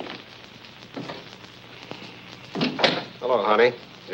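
A door opening and closing, heard as two sharp knocks about two and a half seconds in, followed by a brief spoken word, over the hiss and crackle of an old film soundtrack.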